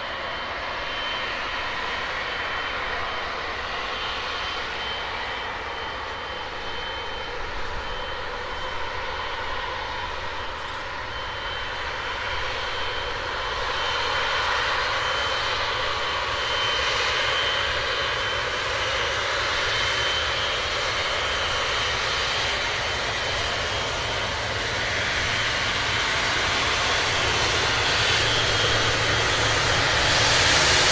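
Boeing 777 jet engines running at low taxi power, a steady rush with a thin high whine, growing louder as the airliner nears.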